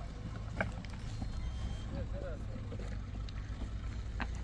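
Faint, distant voices over a steady low rumble, with one sharp click about half a second in.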